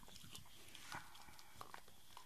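A Staffordshire bull terrier chewing and gnawing on a toy: faint scattered mouth clicks and chewing noises, a slightly louder one about a second in.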